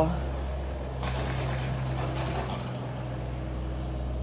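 Diesel engine of a compact wheel loader idling, a steady low hum, with faint voices in the background about a second in.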